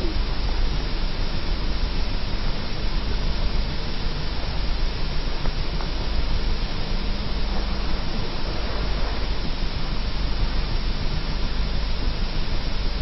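Steady hiss with a low hum underneath, the background noise of an old camcorder videotape recording, with no distinct sound event.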